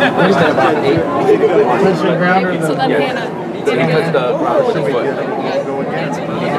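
Several people talking over one another: an overlapping chatter of voices in a large, echoing hall.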